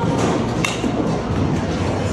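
A single sharp crack about two-thirds of a second in, a baseball struck in an indoor batting cage, over steady background music and room noise.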